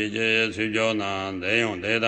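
A man's voice chanting a Tibetan Buddhist tantra in a continuous recitation, with the melody rising and falling from syllable to syllable.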